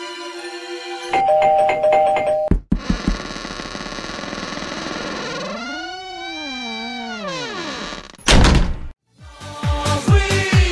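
A two-tone doorbell chime rings about a second in, followed by a thunk. Then a steady hiss carries a long tone that rises and falls, a short loud burst comes near the end, and upbeat dance music starts.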